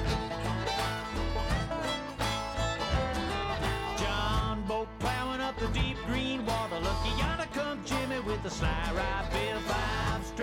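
Instrumental break in a country-bluegrass soundtrack song: acoustic string instruments playing a melody over a steady beat, with no singing.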